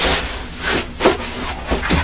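Tissue paper rustling and crinkling in several short bursts as a sneaker is pulled out of its cardboard shoebox.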